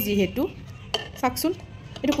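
A few light clinks and taps of a small jar and a metal spoon being handled, among a woman's brief words.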